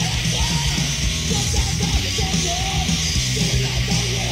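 Hardcore punk song played by a full band, guitars and drums, with yelled vocals over it.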